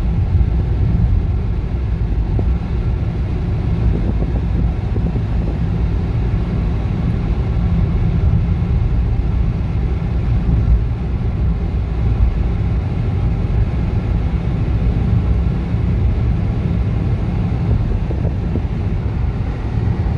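Car interior noise while driving through a road tunnel: a steady, low drone of engine and tyres on the road surface, heard inside the cabin.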